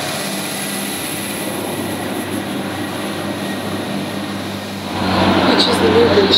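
Irish Rail 22000 Class diesel multiple-unit trains running through a station: a steady engine drone with a faint high whine. It grows louder about five seconds in as a train draws in under the footbridge.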